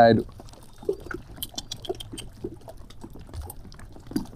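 Small lapping and dripping sounds of lake water, with many faint irregular ticks.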